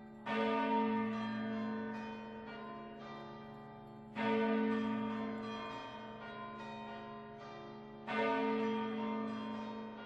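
Bells ringing: three strong strokes about four seconds apart, each ringing on and slowly fading, with fainter bell notes struck in between.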